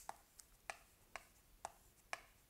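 Chalk tapping and scratching on a chalkboard as characters are written: about five short, sharp taps, roughly two a second.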